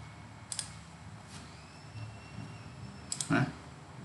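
Computer mouse clicks: three single clicks spaced about a second apart, over quiet room tone with a faint steady high-pitched tone in the middle.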